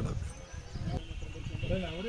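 Faint voices of people talking in the background, with a short wavering utterance near the end.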